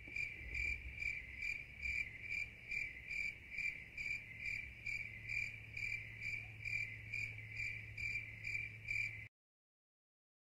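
A cricket chirping at an even pace, about two and a half chirps a second, over a low steady hum. The sound cuts off suddenly near the end.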